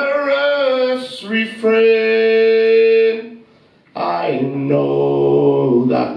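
A man singing unaccompanied into a microphone, drawing out long, steady held notes without clear words. The voice drops out briefly a little past halfway, then a new sustained phrase begins.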